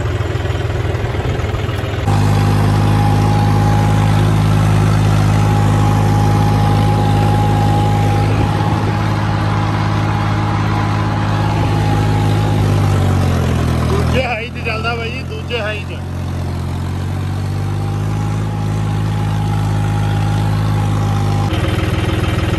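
Tractor diesel engine running steadily, heard from the driver's seat. About two-thirds through, its note drops as the revs fall, then climbs slowly again.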